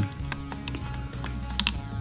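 Background music with a few light, sharp clicks and taps from metal gun parts being handled while a pistol grip is refitted.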